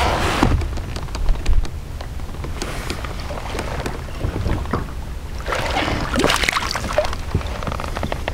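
Fishing kayak moving slowly on open water: a steady low rumble of water and wind on the microphone, with scattered small knocks and clicks of gear on the hull. The rush grows louder twice, just after the start and again a little past the middle.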